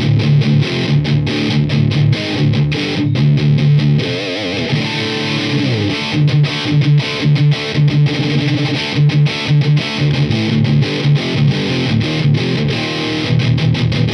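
Gibson Slash Les Paul played through a Marshall DSL40 valve combo on high gain with the tone-shift mid-scoop engaged: a distorted, chugging riff of low chords with frequent short stops.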